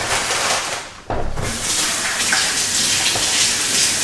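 Water running steadily, a rushing hiss that breaks off briefly about a second in and then runs on.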